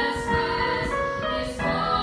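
Three female voices singing a song together in harmony, with held notes that change every half second or so.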